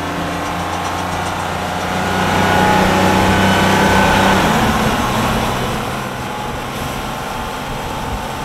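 Car engine sound effect running steadily. It swells louder in the middle, then drops in pitch and eases off, like a car driving past.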